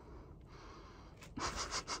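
A person's quiet, breathy laugh: a few short puffs of breath starting about a second and a half in.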